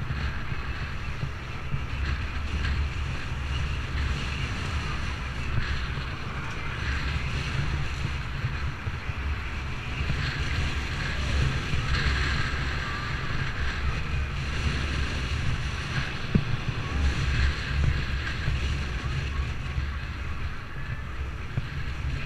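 Wind rumbling over the microphone of a camera on a moving bicycle, with cars driving past close by in the next lane. A single sharp click sounds a little after the middle.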